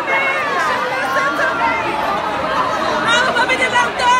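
Dense crowd chatter: many voices talking and calling out over one another at once, with one louder voice rising above the rest near the end.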